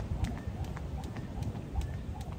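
Skipping rope slapping the brick paving in a steady rhythm of sharp clicks, several a second, over a low rumble.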